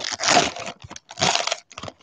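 Plastic wrapper of a trading-card value pack crinkling and tearing as it is pulled open by hand, in two short bursts, the second a little over a second in.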